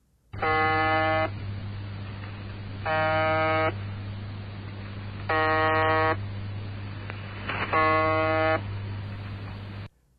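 Shortwave radio reception of the Russian numbers station UVB-76, 'the Buzzer': four buzz tones of about a second each, repeating about every two and a half seconds over a continuous low hum.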